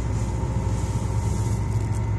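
John Deere 9760 STS combine harvester running with a steady, even low drone and a few faint steady tones above it.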